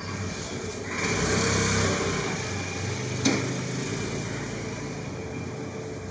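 Paper plate press at work while a formed plate is taken out of the die: a rush of scraping noise about a second in and a sharp click a little after three seconds, over a low steady hum.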